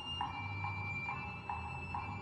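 Orchestral music in a quiet passage: short pulses repeat evenly a little over twice a second under high held notes that shift in pitch, over a low drone.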